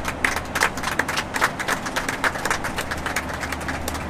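Many people clapping in an airliner cabin, dense hand claps over the steady low drone of the aircraft.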